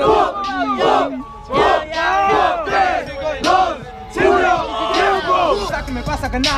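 A crowd of young men chanting and shouting a short phrase in unison, over and over, loud and rhythmic, as a reaction between rounds of a freestyle rap battle.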